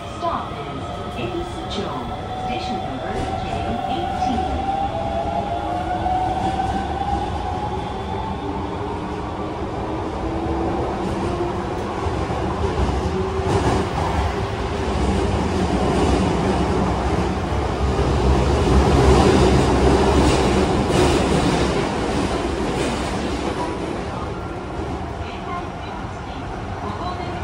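Osaka Metro 66 series subway train heard from inside the car as it gathers speed in a tunnel: the traction motors whine in tones that glide slowly upward, under a running rumble with clicks from the wheels. The noise grows to its loudest about three-quarters of the way through and eases near the end.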